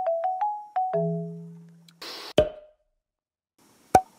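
Background music: a light melody of short, quickly fading notes that stops about two seconds in. A brief hiss and a sharp click follow, then a pause and another sharp click at the end.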